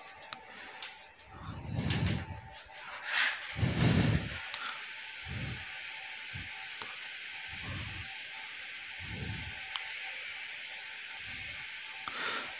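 Quiet handling noise: rustling and a few soft low thumps, the loudest about four seconds in, over a steady faint hiss.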